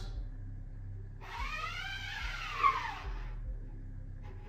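Scoop coater loaded with screen-printing emulsion drawn up the mesh of a screen, its edge squealing against the mesh as it coats the side opposite the print side. One drawn-out squeal of about two seconds that rises and then falls in pitch.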